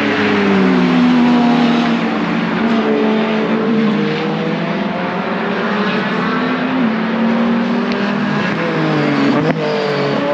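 GT race cars' engines at full song as they pass on the circuit, several engine notes overlapping and sliding down and up in pitch as the cars go by and accelerate away, with a gear change about seven seconds in. A sharp click comes near the end.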